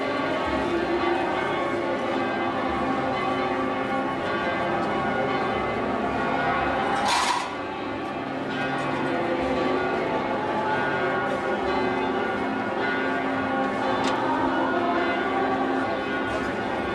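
Church bells ringing continuously, many tones overlapping.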